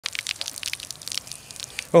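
Streams of urine splashing on the ground, heard as a quick, irregular run of crackly splashes.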